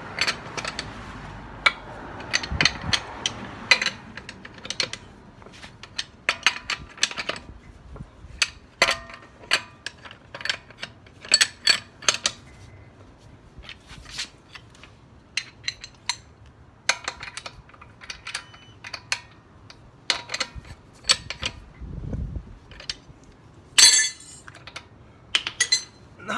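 Socket wrench clicking and clinking on the wheel's lug nuts as they are tightened, with irregular clicks, some in quick runs, and a louder metal clink near the end.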